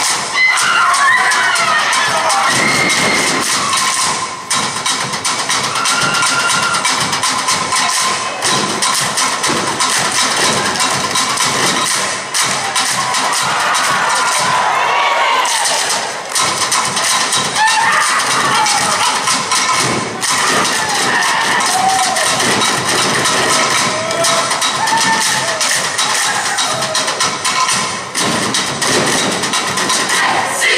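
A large Samoan group performing live: many voices singing and chanting together, with sharp claps and hand slaps sounding throughout.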